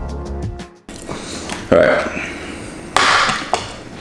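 Background music with a steady beat cuts off about a second in; then a man burps loudly, followed by a short noisy burst.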